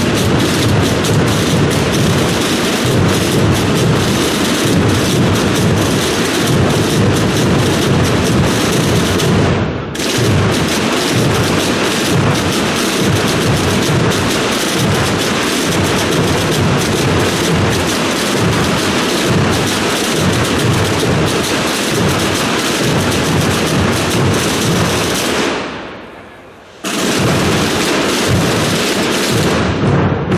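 Massed processional drums of a Holy Week brotherhood band, many drummers beating together in a dense, continuous rattle of strokes. The sound dips briefly just before ten seconds in, fades away near the end and cuts back in sharply.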